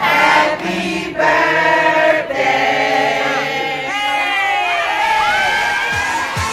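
A group of voices singing in harmony, choir-style, with long held notes that slide between pitches.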